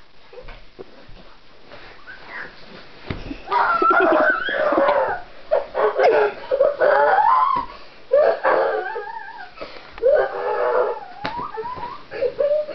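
A person being rolled up in bedding lets out drawn-out, wavering whines and moans, several in a row, loud after about three seconds of faint rustling.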